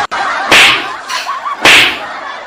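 Two sharp slap hits about a second apart, as a cushion is swung at a man's head.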